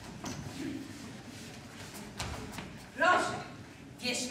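A quiet pause on a stage in a large hall, with a few faint knocks and rustles, then a person's voice speaking briefly about three seconds in.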